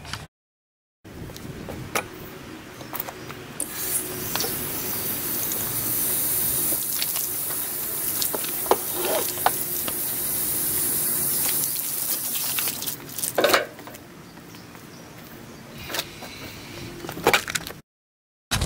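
Garden hose spraying water onto a flat board on the ground: a steady hiss that starts about three and a half seconds in and stops after about nine seconds, with a few knocks before and after it.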